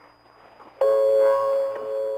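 Faint shortwave radio hiss. About a second in, music cuts in abruptly: sustained electronic keyboard chords, heard through a shortwave receiver.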